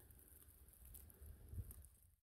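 Near silence: a faint low rumble, with a slight soft sound about one and a half seconds in.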